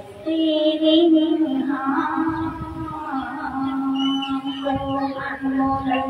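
Several voices singing a slow devotional chant in long held notes over a steady sustained tone, the melody moving only now and then.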